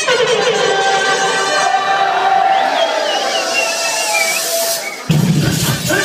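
Loud club dance music played over the sound system: a held build-up with a rising hiss, then the bass and a steady beat come back in suddenly about five seconds in.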